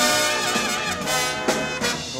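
Big-band brass section led by trumpets playing a held swing chord fill between sung lines, with a fresh accent about one and a half seconds in.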